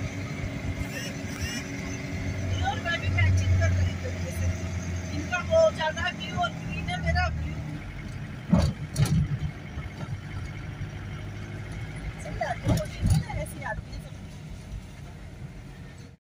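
A car being driven, heard from inside the cabin: a steady low rumble of engine and tyre noise, with a few sharp knocks about halfway through and near the end, and faint voices talking.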